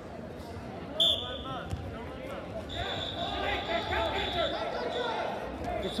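Referee's whistle: one short, sharp blast about a second in, then a longer, fainter steady whistle tone from a little under 3 s to about 4.5 s, over crowd voices and shouting in a gymnasium.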